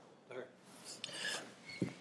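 Faint rustling and rubbing in a quiet room, once a little after the start and again past the middle, just before a man begins to speak.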